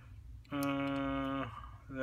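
A man's voice holding a drawn-out hesitation sound, an 'ummm', at one steady pitch for about a second.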